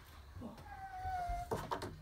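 A baby lets out one drawn-out, high-pitched whine that falls slightly, followed by a few sharp knocks near the end.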